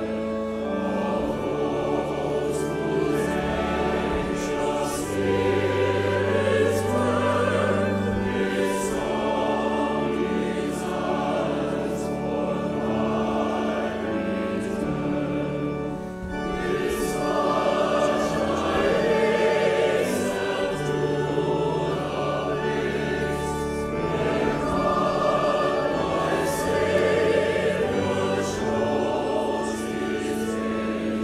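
A hymn sung by a congregation and choir together, over an accompaniment of long, steadily held bass notes, with a short breath between phrases about sixteen seconds in.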